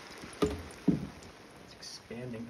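Two knocks about half a second apart, over faint fizzing from a lye and molten beeswax mixture foaming up in a steel pot.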